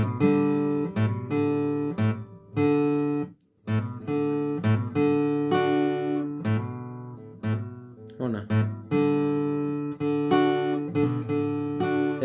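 Acoustic guitar strummed in chords, each strum ringing out before the next, with a brief stop about three and a half seconds in.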